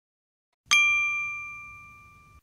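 A single bright bell-like ding sound effect, struck about two-thirds of a second in and ringing out as it slowly fades.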